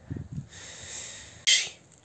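A brief rustle, then a short splash about one and a half seconds in as a hand-held fish is dipped into shallow river water to be released.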